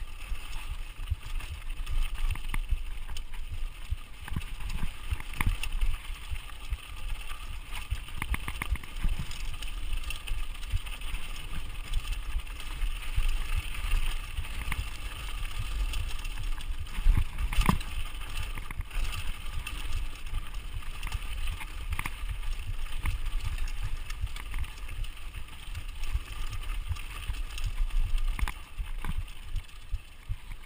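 Giant Reign full-suspension mountain bike descending a dry, rocky dirt trail: tyres running over dirt and stones and the bike rattling and clattering over bumps, with a steady low rumble of wind on the microphone. A sharper knock comes a little past halfway.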